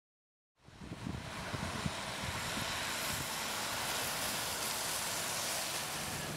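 Steady outdoor rushing noise with an uneven low rumble under it, fading in about half a second in.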